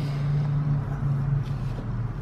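A steady low hum, one unchanging low tone over a faint hiss, with no clear strokes or clicks.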